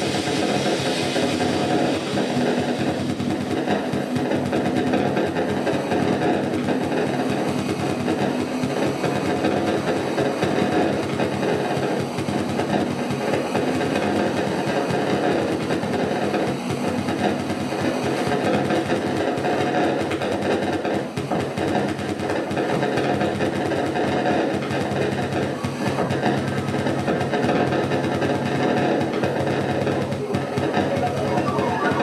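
Improvised electronic music from modular synthesizers: a dense, unbroken texture of held low drones under grainy, crackling noise. A bright hiss fades out over the first couple of seconds.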